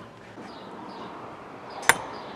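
A golf driver striking a ball off a driving-range mat: one sharp crack near the end, over quiet outdoor background.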